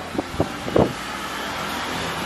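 A few short sipping sounds through drinking straws in the first second, followed by a steady rushing noise.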